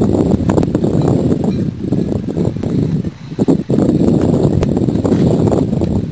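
Wind buffeting the microphone on a moving boat: a loud, irregular rumble that dips briefly about three seconds in.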